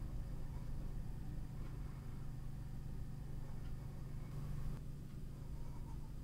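Quiet room tone with a steady low hum and no distinct events.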